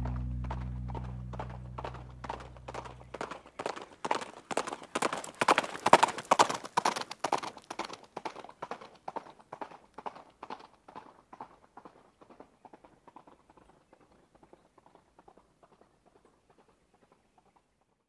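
The last low note of an electric bass rings and dies away over the first few seconds. Then comes a steady clip-clop rhythm of hoof-like knocks, which swells to its loudest about six seconds in and fades away toward the end.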